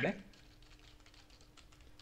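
Faint typing on a computer keyboard, a quick run of light key clicks, as a short phrase is entered.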